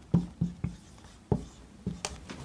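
Dry-erase marker writing on a whiteboard in a series of short strokes.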